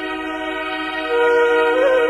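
Harmonium drone: a sustained chord of reedy held tones opening a bhajan, with a stronger melody note entering about a second in and gliding up near the end.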